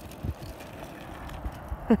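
Quiet outdoor noise with a few irregular low thumps, and a burst of laughter breaking out right at the end.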